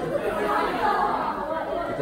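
Several people talking at once in a room: indistinct, overlapping chatter with no single voice standing out.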